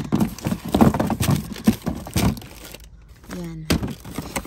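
Plastic-wrapped candy packages and cardboard boxes being handled and shifted in a pile: a quick run of knocks, thumps and crinkles that dies down about two and a half seconds in.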